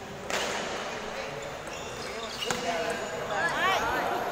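Table tennis ball clicking off the paddles and the table during a doubles rally, a few sharp hits. Voices call out near the end as the point finishes.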